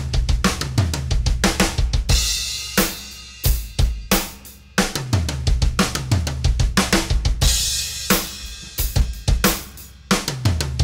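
TAMA Bubinga Starclassic drum kit playing a double bass drum fill: four quick strokes with the hands across snare and toms, then two bass drum strokes from the double pedal, repeated in a steady run. Crash cymbals ring out about two seconds in and again about seven and a half seconds in.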